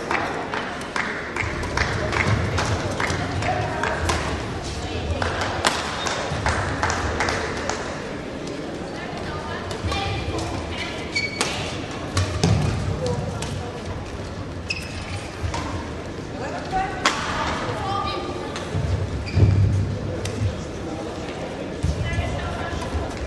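Badminton rallies in a large echoing sports hall: sharp racket strikes on the shuttlecock and thuds of players' footwork on the court, repeated irregularly throughout, over a steady background of voices.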